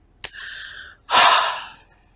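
A crying woman's gasping breaths: a sharp gasp about a quarter second in, then a louder, noisier breath about a second in.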